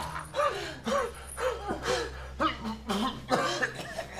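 A person coughing and gasping in a quick series of short, strained bursts, about two a second, as if out of breath after a violent struggle.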